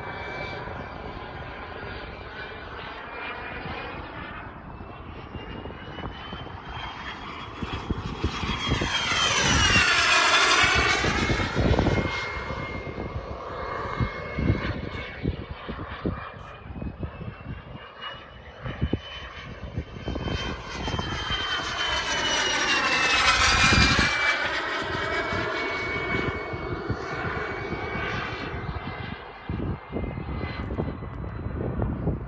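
KingTech K-102G4 turbine of a Top RC Cougar model jet, making two fast low flybys: the turbine whine swells as the jet approaches and drops in pitch as it passes, once about a third of the way in and again past three-quarters of the way through.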